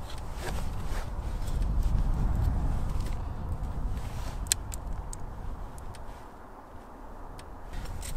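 Wooden beehive frames being lifted and handled with a metal hive tool, giving a few light clicks and knocks, over a low rumble that swells in the first half.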